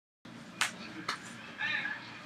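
Two sharp knocks about half a second apart, then a brief high-pitched whine from a begging pet near the end.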